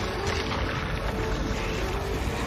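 A unicorn's snarl, a harsh, noisy growl, over dramatic background music.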